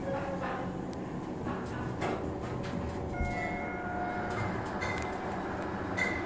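Schindler hydraulic elevator car running, a steady rumble with a few clicks and knocks in the first two seconds. A brief high whine comes in about three seconds in and fades out a second or two later.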